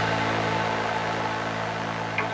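Electronic dance music at a breakdown: a held synthesizer chord with a wash of hiss and a low drone, with no beat, easing slightly in level.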